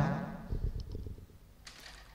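A man's reciting voice trails off just after the start, leaving a pause of faint low background noise with a few soft clicks.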